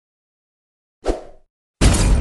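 Added sound effects for a stop-motion boss defeat: a short pop about a second in, then a loud, sudden explosion-like burst near the end whose rumble fades slowly.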